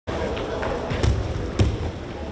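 Two dull thuds, about a second in and a half-second later, the second the louder, over the chatter of voices in a large hall.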